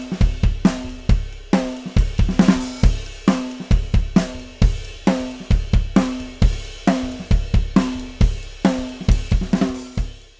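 Drum kit playing a steady groove of kick, snare and cymbals. The kick drum has a single-ply batter head and a towel inside pressing against both heads, so each kick is a punchy low thump with plenty of attack and little sustain.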